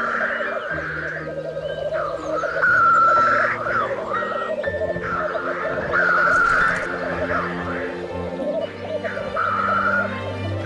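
Black grouse at the lek: males' continuous rapid bubbling song, many voices at once, over background music with long held notes.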